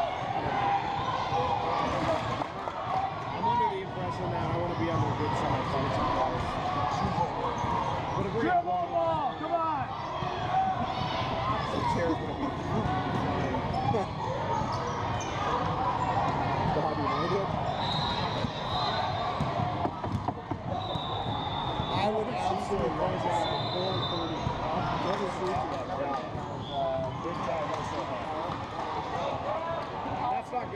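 Basketball being dribbled and bouncing on a hardwood gym floor during a game, under a steady hubbub of overlapping voices from players and spectators.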